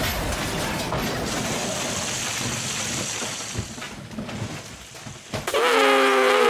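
Model railway trucks crashing through a wooden shed: a loud crash, then clattering, rumbling debris that dies away over several seconds. Near the end a loud, wavering pitched call begins.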